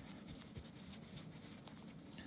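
Faint, scratchy rubbing of a polishing cloth with metal polish over a Seiko SNZG watch case.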